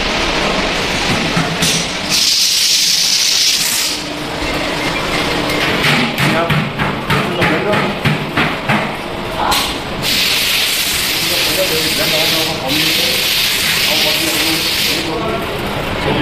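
Loud hissing that comes in bursts, one of about two seconds early on and a longer one of about five seconds later, with a run of quick clicks between them, under voices in a factory room.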